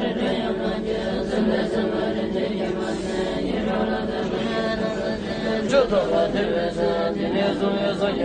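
Tibetan Buddhist nuns chanting prayers in unison: a steady, low recitation held on nearly one pitch.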